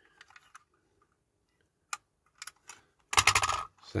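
Small clicks and taps of two diecast metal toy Ford Transit vans being handled, then a short rattle of knocks about three seconds in as they are put down together on a cutting mat.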